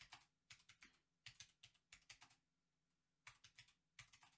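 Faint keystrokes on a computer keyboard: an irregular run of typing, a pause of about a second, then a few more keys near the end.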